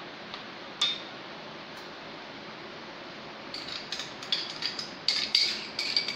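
A spoon clinking against a glass cup and steel mixing bowl while cream is scooped into custard: one sharp click about a second in, then a run of short ringing clinks, several a second, from about halfway through.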